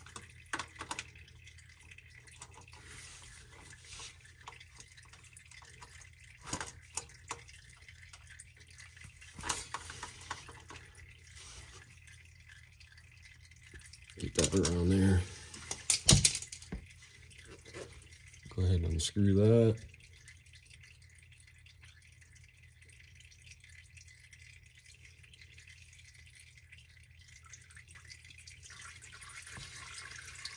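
Oil filter wrench clicking and scraping on the spin-on external filter of an Allison 1000 transmission as it is broken loose and unscrewed, with scattered sharp clicks. Near the end, transmission fluid begins to run and drip from the loosened filter.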